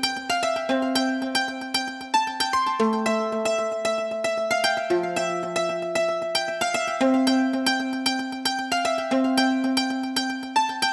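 Background music: a plucked-string tune of quick, evenly repeated picked notes over chords that change about every two seconds.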